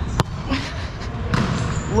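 Volleyball serve: one sharp slap of the hand striking the ball just after the start, then a duller knock of the ball being played about a second later.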